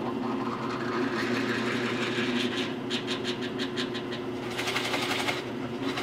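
A drill press runs steadily while a Forstner bit bores into wood in short feeds, taking a little and backing off. A rapid rattle comes in twice, around halfway and near the end, as the bit cuts.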